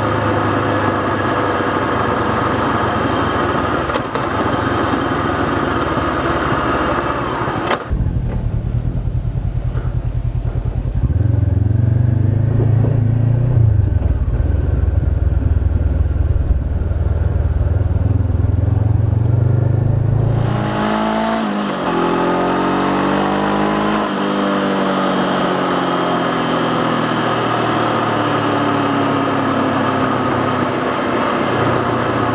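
2013 Honda CB500X's parallel-twin engine running as the bike rides a dirt road, with a hiss of wind. About eight seconds in the sound changes abruptly to a deeper, steadier engine drone. Past twenty seconds it switches back to the brighter engine and wind sound, the engine note rising and falling in pitch.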